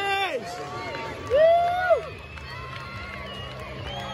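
Spectators shouting drawn-out calls toward the players, the loudest about a second and a half in, with fainter calls after it and a low steady hum underneath.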